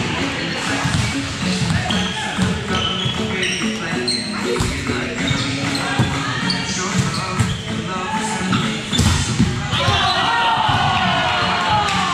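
Volleyball play: a few sharp smacks of the ball being hit or striking the floor, amid players' voices and background music.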